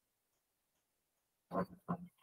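Near silence, then about a second and a half in, two short vocal sounds in quick succession.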